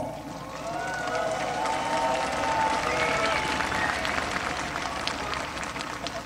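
Large audience applauding, with a few voices calling out over it; the applause eases off toward the end.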